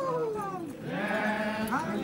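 A procession's group chant of men's voices. One long falling cry trails off, then several voices come in together on a held call about a second in, with a rising new call starting near the end.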